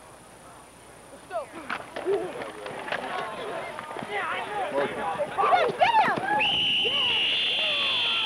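Spectators shouting and yelling over one another as a youth football play runs. From about six seconds in, a referee's whistle sounds in one long steady blast that ends the play.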